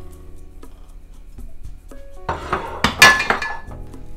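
A metal frying pan clattering and clinking on a gas stove's grate as it is handled, in a burst of about a second, loudest about three seconds in, with a short ring. Background music plays underneath.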